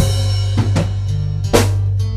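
A band playing together: electric bass guitar holding low notes under a drum kit, with drum hits about every three-quarters of a second and the loudest one about one and a half seconds in.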